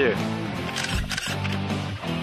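Background music playing steadily, with a few short clicks about a second in.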